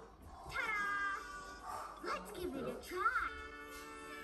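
A cartoon cat character meowing twice over light background music: a falling meow about half a second in, then a shorter one that rises and falls about three seconds in.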